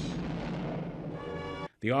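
Cartoon explosion sound effect fading away over a music score, cutting off suddenly near the end.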